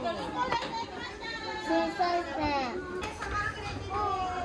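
Young children talking and calling out in high voices, their pitch rising and falling.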